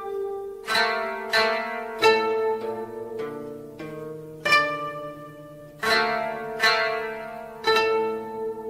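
Japanese traditional-style music on a koto: plucked strings sounding notes and chords that ring and fade, struck about once a second. A low sustained note comes in underneath about halfway through.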